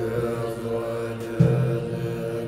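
Music with a low chanted mantra over sustained drone tones. A new low chanted note comes in about one and a half seconds in.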